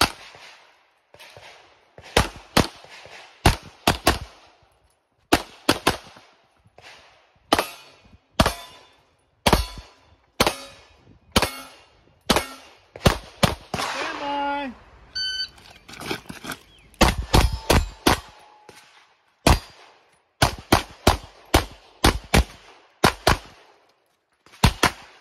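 Pistol gunfire from an optic-sighted competition handgun: sharp shots fired mostly in quick pairs, two on each target, with short gaps while the shooter moves. About two-thirds of the way through there is a short pause with a brief voice, then a high electronic beep from a shot timer. A fast string of shots follows the beep.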